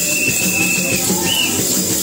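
Lively church worship music: voices singing over drums and rattling percussion keeping a steady beat. A long high note is held through the first half.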